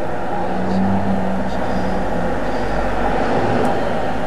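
Steady low rumbling background noise, with a faint level hum that stops about two seconds in.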